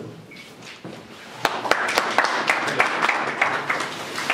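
A small crowd applauding. Quiet at first, then a dense run of hand claps sets in about a second and a half in and keeps going.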